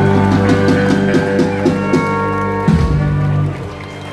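Live country band with guitars and drums playing the closing bars of a song; a final chord hit comes close to three seconds in, after which the music dies down.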